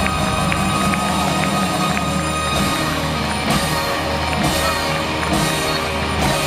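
Live rock band with drums, guitars and saxophone playing a rock-and-roll number at full volume, heard from the crowd at an open-air stadium concert, over a steady beat.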